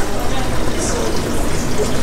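Water running steadily, with faint voices in the background.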